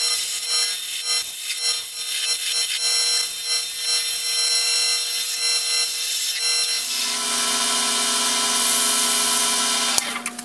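Wood lathe running with a steady hum while a turning chisel cuts a spinning walnut blank, giving irregular scraping strokes as the cut comes and goes. About seven seconds in it turns into a smoother, continuous cutting hiss.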